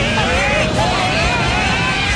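Cartoon sound effects: a steady low rumble under several overlapping wavering, warbling tones that glide up and down.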